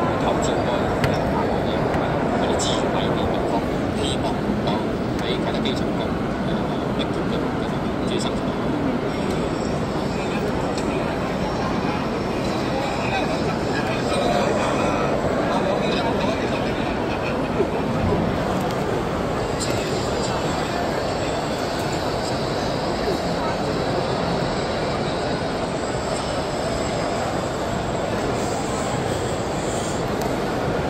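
Indistinct voices over a steady low rumble of hall ambience.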